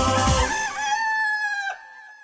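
A rooster crows once as the jingle's music finishes, one long held note that drops away at the end.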